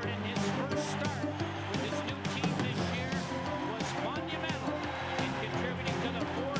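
Music with steady held notes, mixed with a crowd cheering and shouting, and frequent sharp claps.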